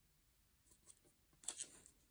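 Faint rustling and brushing of paper as a cut photo strip is laid onto a diary page and pressed down by hand, with a short, slightly louder scrape of paper about one and a half seconds in.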